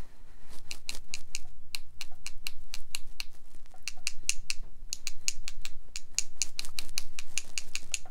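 A paintbrush loaded with watered-down gouache being tapped against the handle of a second brush to splatter paint, giving rapid, fairly regular clicks, several a second.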